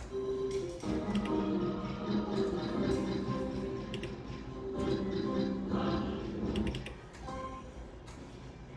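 Novoline video slot machine playing its free-spins music, an electronic melody, while the reels spin through the last free games.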